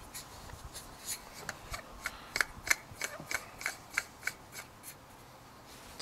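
Light, regular clicks, about three a second, as the SPI 3x afocal germanium lens is twisted and screwed into its plastic mount on a FLIR M24 Recon thermal imager, with soft handling rubs.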